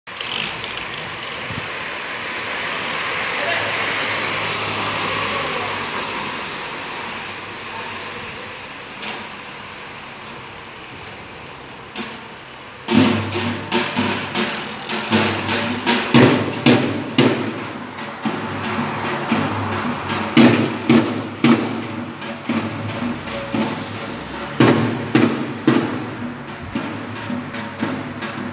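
A car passes along the street. About 13 seconds in, a Ramadan sahur drummer starts beating a davul (a large Turkish bass drum) in an uneven rhythm of loud booming strikes with lighter strokes between them, which goes on to the end.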